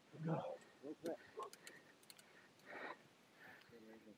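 A voice calling "Go, go" to start a rider, then a few faint clicks over a quiet background.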